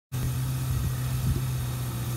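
2012 Kawasaki Ninja ZX-6R's inline-four engine idling steadily.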